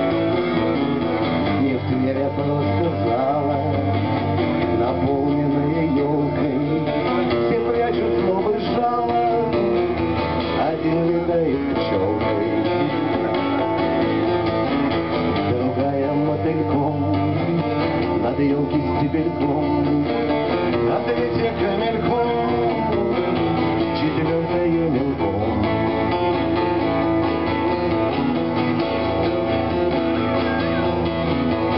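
Live steel-string acoustic guitar, strummed steadily and without a break.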